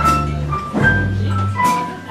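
A jazz big band playing live: low bass notes under short held higher notes, with a few sharp drum-kit cymbal strikes.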